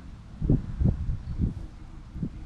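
Hens giving short, low clucks, four in quick succession, over a low rumble.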